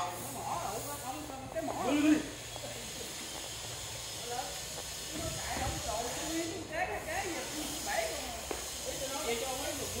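Workers' voices talking and calling out, loudest about two seconds in, over a steady high hiss.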